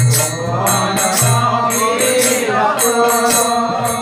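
A man singing a Bengali kirtan, a devotional chant, in drawn-out wavering notes over a steady percussion beat.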